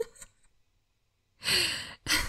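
A woman's breathy sigh, heard close to the microphone, starting about three-quarters of the way in and running on past the end. Before it, at the very start, the tail of a soft laugh and a few faint mouth clicks.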